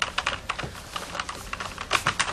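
Fast typing on a computer keyboard: a quick, irregular run of key clicks.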